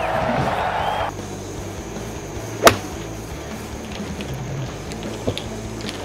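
Gallery cheering that cuts off abruptly about a second in. Then, near the middle, a single sharp crack of a golf club striking the ball off the tee.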